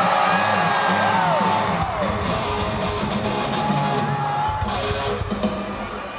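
Electric guitar noodling with sliding, bending notes over crowd noise.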